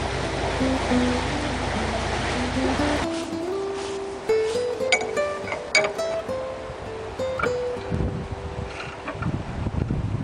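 Background music: a plucked-string melody of single notes. For the first three seconds a steady rushing noise runs under it, then cuts off suddenly.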